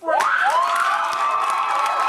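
Audience suddenly breaking into loud cheering, high whoops and clapping the moment a slam poem ends, many voices held together over the applause.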